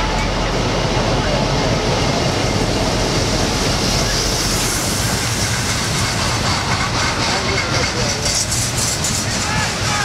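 Steady wind rumbling on the microphone, with distant voices of players shouting on the pitch.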